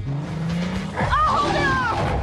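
Car engine running with a low steady hum, joined about a second in by a louder high squealing tone that bends up and then down.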